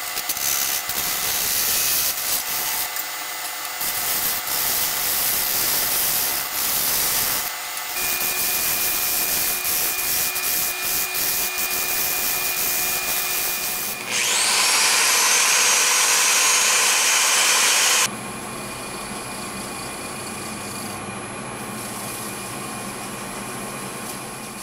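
Wood lathe spinning while a turning tool cuts and reshapes the top of an epoxy resin and wood lid, a scraping cutting sound, played back sped up. The sound changes abruptly at several cuts in the footage, with a louder rushing stretch about two-thirds of the way through.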